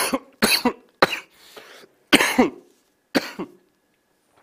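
A man coughing in a fit of five sharp coughs, spaced unevenly over about three seconds.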